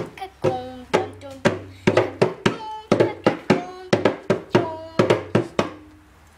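A girl's voice singing a quick dance beat: short held notes with sharp knocks or claps about three times a second.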